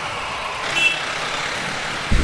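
Steady street-traffic and engine noise from passing vehicles and idling motorcycles, with one short high beep just under a second in.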